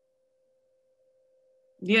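Near silence except for a faint steady tone, with a voice starting near the end.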